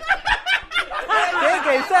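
People talking, with a short burst of snickering laughter near the start.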